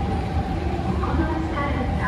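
Escalator running with a steady low hum and a faint steady tone above it, while an indistinct voice speaks over it.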